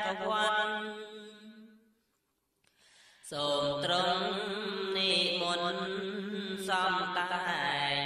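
A solo male voice chanting in Khmer Buddhist smot style, drawing out long wavering notes. The phrase fades out about two seconds in, and after a short pause the chant starts again about a second later.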